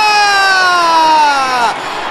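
A male TV football commentator's long drawn-out shout on a goal, one held note sinking slowly in pitch, breaking off just before the end.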